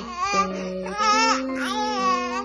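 A baby vocalizing in a few short high-pitched rising-and-falling cries, over background music with long held notes.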